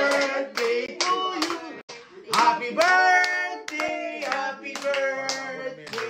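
Several people singing a birthday song together, with hand clapping in time throughout.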